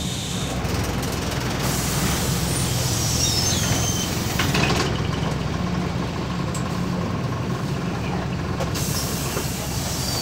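Inside a MAZ 206.085 city bus, its Mercedes-Benz OM904LA four-cylinder turbodiesel running with a steady low drone. A hiss of compressed air comes in about two seconds in, and again near the end.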